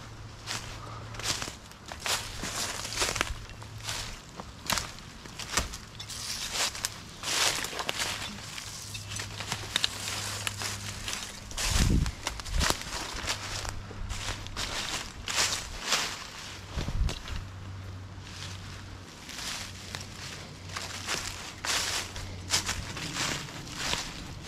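Footsteps crunching and rustling through a deep layer of dry fallen leaves on a forest floor, at a steady walking pace.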